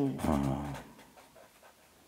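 A short drawn-out voice sound that falls slightly in pitch and fades out within the first second.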